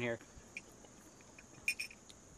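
A metal spoon stirring creamer into coffee in a ceramic mug: a few light clinks near the end, over a faint steady high-pitched whine.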